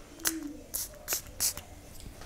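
Louis Vuitton City of Stars perfume atomizer sprayed onto skin, making a few short hissing puffs in quick succession.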